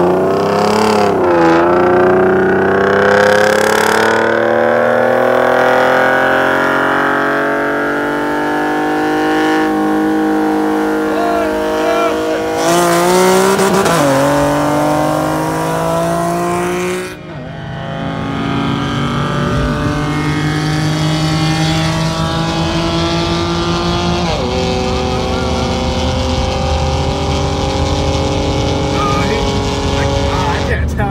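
Tuned Nissan VQ 3.7-litre V6 engines at full throttle in a roll race, climbing in pitch through the gears. The pitch drops sharply at each of several upshifts, and the engines pull up again after each.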